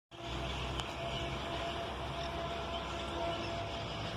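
Distant diesel locomotive running as the train comes into the station, a steady low hum over an even background hiss.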